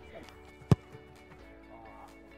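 A single sharp thump of a football being kicked, about three quarters of a second in, over background music.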